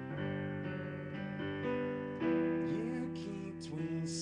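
Piano playing held chords, a new chord struck about every second, the loudest a little past halfway.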